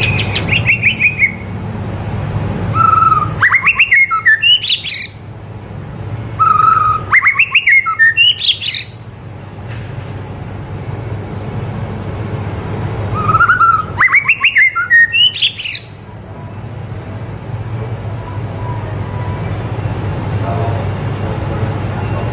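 White-rumped shama in full song: four loud phrases with pauses between, each a whistled note breaking into a quick run of sharp rising and falling notes. A steady low hum lies underneath.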